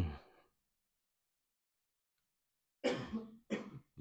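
A man clearing his throat in two short bursts near the end, after a couple of seconds of near silence.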